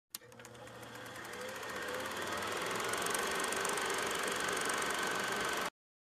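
A small machine running with a fast, even clatter, fading in over the first few seconds, then holding steady and cutting off suddenly near the end.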